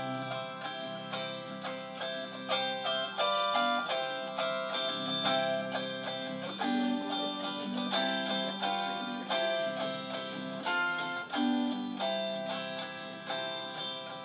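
Solo plucked string instrument playing an instrumental break in a country-folk song: a quick run of picked notes over held low bass notes, with no singing.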